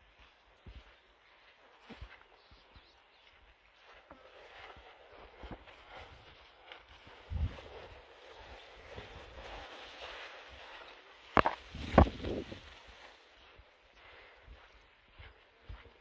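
Footsteps on dry ground, with leaves and branches brushing and rustling while walking through dense bush. A low thump comes about halfway through, and two sharp knocks or cracks about three-quarters of the way in are the loudest sounds.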